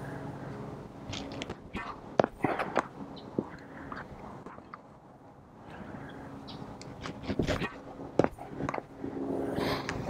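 A few short, sharp pops of a tennis racket striking the ball on slow-swung topspin kick serves, with lighter ball bounces on the hard court between them, over a faint outdoor background.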